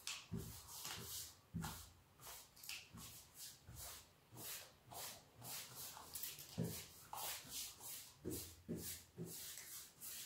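Paintbrush bristles swishing back and forth over a wooden headboard panel, brushing on a wet, watered-down grey paint wash: a quick, even run of faint swishes about twice a second, some with a soft low thump.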